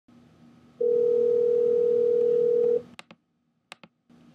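Telephone line during an outgoing call: one steady ringing tone about two seconds long, then two pairs of sharp clicks on the line over a faint hiss and hum.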